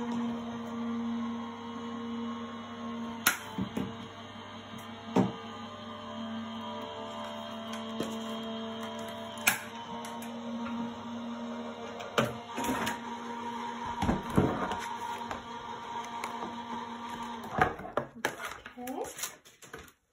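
Gemini electric die-cutting machine running, its motor giving a steady hum as it feeds the die and cutting plates through, with a few clicks along the way; the hum stops a couple of seconds before the end.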